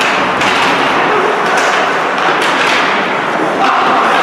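Ice hockey play in a rink: several sharp knocks from sticks and puck, over a steady din of arena noise.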